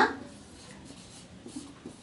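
Marker pen writing on a whiteboard: faint scratchy strokes, with a few small ticks in the second half as letters are drawn.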